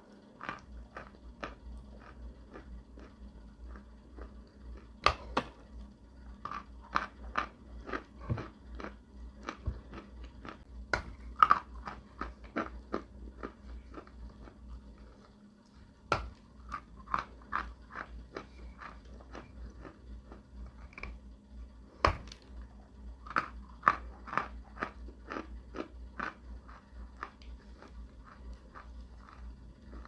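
Close-up crunching of a lump of white edible clay being bitten and chewed: a steady run of crisp crunches, two or three a second, with a few louder bites and a short lull about halfway.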